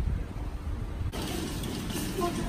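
Wind buffeting a phone microphone as a low, uneven rumble, then an abrupt change about a second in to the steady background noise of a supermarket entrance.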